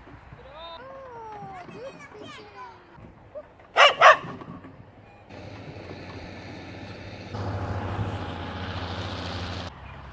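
A dog barks twice in quick succession, loud and sharp, about four seconds in. From about five seconds in a steady rushing noise follows; it grows louder about two seconds later and cuts off suddenly shortly before the end.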